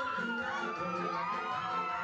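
Live band dance music with a steady beat and a gliding melody line, with crowd voices over it.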